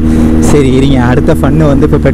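Kawasaki Z900 inline-four motorcycle engine running steadily at cruising speed, with a person's voice over it.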